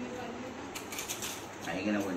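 Plates and cutlery clinking in a short clatter of light clicks about a second in, under indistinct voices at the table.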